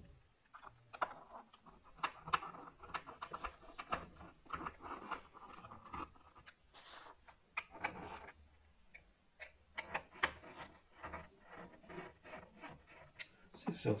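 A small screwdriver driving in and tightening the last of three deep screws that hold a replacement battery in a MacBook's case: a run of light clicks and scratchy rubbing.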